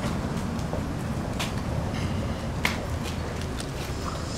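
Footsteps of a flag party walking in on paving stones: a few light, sharp clicks over a steady low outdoor rumble.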